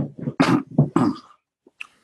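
A person coughing, a short run of several coughs in quick succession over the first second and a half.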